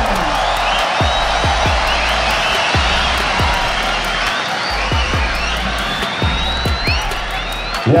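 A large stadium crowd of football supporters cheering, with many high rising whoops over the roar and low thuds underneath.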